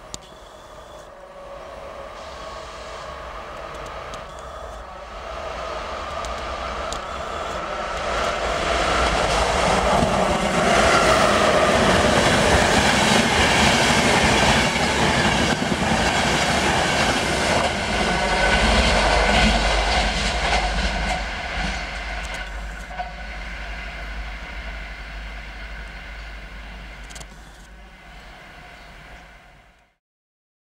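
Electric-locomotive-hauled passenger train approaching and passing at speed. It grows louder over the first ten seconds, is loudest through the middle as the coaches roll by, then fades away and cuts off suddenly at the end.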